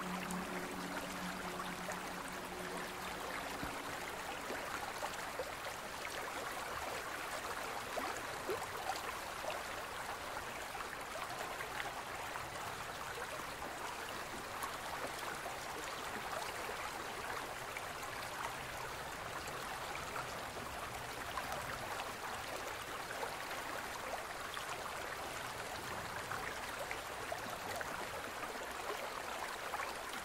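Steady running water with a fine trickling crackle, like a stream. The low tones of the meditation music fade out over the first few seconds.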